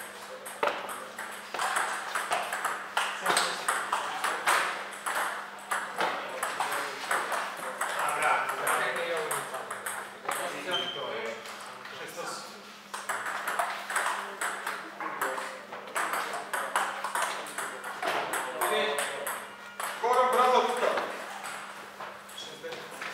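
Table tennis ball being struck back and forth with paddles and bouncing on the table in a rally, a fast run of sharp clicks. Voices come in between strokes at times.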